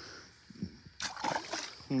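Water splashing in a shallow river as a released smallmouth bass thrashes off the angler's hand, a short splash beginning about a second in.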